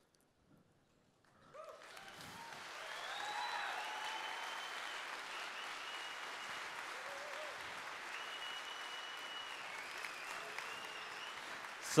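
Audience applause that starts about a second and a half in and swells into a steady ovation, with a few cheers and whistles over it.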